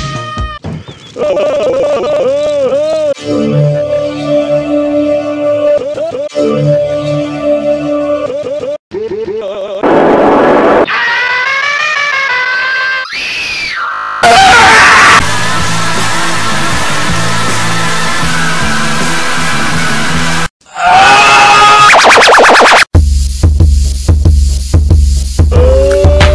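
A rapid-cut collage of music and warped, pitch-shifted voice samples, spliced with abrupt jumps from one clip to the next. One stretch has a voice sliding up and down in pitch, the sound drops out briefly near the end, and then bass-heavy music comes in.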